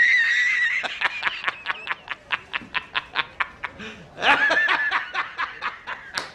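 A man laughing hard: a high-pitched opening whoop, then a long run of rapid, evenly spaced 'ha' bursts, about five a second, breaking into another high cackle a little after the middle.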